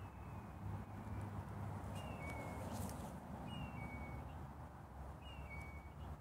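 A songbird singing a clear two-note whistle, a short higher note dropping to a longer lower one, repeated four times about every one and a half to two seconds, over a steady background hiss.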